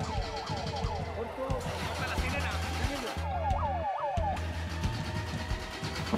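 Electronic yelping siren fitted in the trapped pickup, a fast run of falling wails; it cuts out about a second in and sounds again briefly around the middle. Background music with a steady low hum runs underneath.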